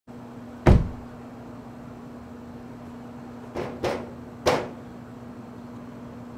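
A car door slams shut once, and about three seconds later come three knocks on a door, the last a little after the first two. A steady low hum runs underneath.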